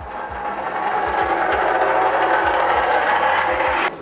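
Hand pallet jack rolling over asphalt with a loaded pallet on its forks, its wheels making a loud, steady rolling rattle. The noise builds over the first second and stops abruptly near the end. A soft music beat runs underneath.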